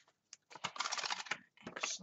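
Paper rustling and crackling as planner pages are turned and a sticker sheet is handled. A dense run of rustle starts about half a second in, with a second short burst near the end.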